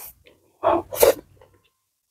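Close-miked eating sounds as a mouthful of fried rice is taken by hand and chewed: a faint click, then two loud noisy mouth sounds about half a second apart, around a second in.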